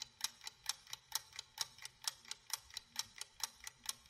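Clock-like ticking sound effect, quick and perfectly even at a little over four ticks a second, with a faint steady low hum beneath it.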